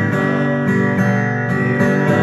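Kirtan music: an instrumental stretch with an acoustic guitar strummed in a steady rhythm, about three strums a second.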